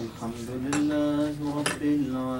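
A man's voice chanting melodically into a microphone, with long held notes and a few sharp hissing consonants.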